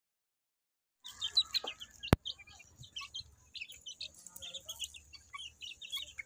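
Month-old gamefowl chicks peeping in many short high calls, starting about a second in, with one sharp click about two seconds in.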